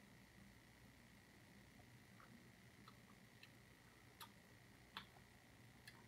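Near silence: faint room tone with a steady faint high hum and a handful of faint, short clicks, the small mouth-and-glass sounds of sipping beer from a pint glass; the loudest click comes about five seconds in.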